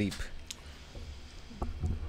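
A sharp single click about half a second in and a fainter click later, over a low rumble.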